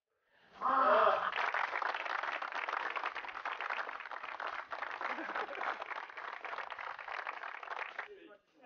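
A crowd clapping and cheering, opening with a shout about half a second in, then dense steady applause that stops abruptly at the end.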